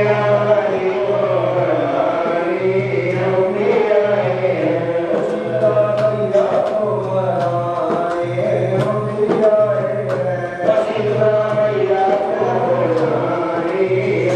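Group of men chanting a Hindu devotional hymn together in long, wavering sung lines, amplified through handheld microphones. Sharp hand-drum strokes are heard through the middle.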